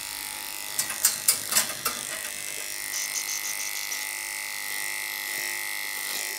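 Electric pet grooming clipper running steadily with a constant high hum, its blade working through the dog's matted leg coat. A cluster of sharp clicks and knocks comes between about one and two seconds in.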